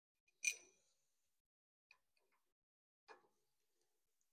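Small metal-on-metal clicks from screws and a steel hex key being handled at an aluminium saw-holder plate. There is one sharp clink with a brief ring about half a second in, faint ticks near two seconds, and another click about three seconds in.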